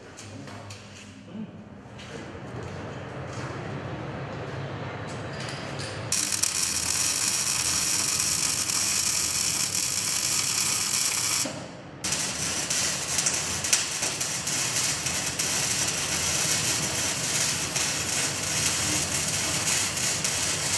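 Gas-metal-arc (MIG/MAG) welding: after a few quieter seconds of workshop noise, the arc strikes about six seconds in with a loud, steady crackling hiss. It breaks off briefly near the middle, then restarts and runs on.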